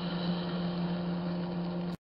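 A steady low mechanical hum over an even hiss, cutting off abruptly at the very end.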